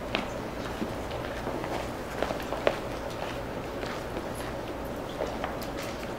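Footsteps and scattered light clicks and taps at irregular intervals as people move about in a quiet hall, over a steady low hum.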